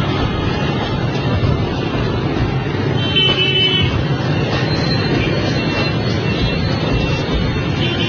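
Dense street traffic of many motorbikes and scooters running together, a steady loud noise, with short horn toots, the clearest about three seconds in.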